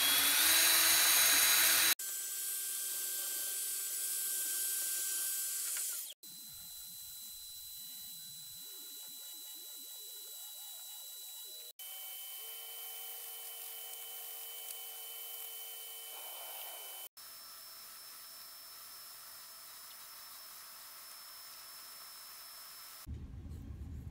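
Cordless drill clamped in a vise, spinning a sanding drum against the wooden planks of a model ship hull: a steady motor whine with sanding. It comes in several clips cut together, each breaking off abruptly and resuming at a different pitch and level, loudest in the first two seconds.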